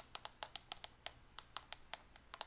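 Keys of a Rii i8 mini wireless keyboard being typed on, a quick, irregular run of faint clicky keypresses, about six a second.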